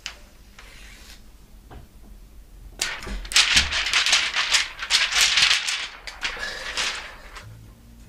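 Thin plastic protective film, just peeled off a new laptop screen panel, crinkling and crackling. The dense crackle starts about three seconds in and lasts about four seconds.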